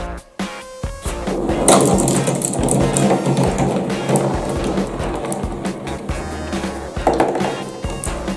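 Several glass marbles rolling down a cardboard marble-run track, a dense rumbling clatter that starts about a second in, heard over background music.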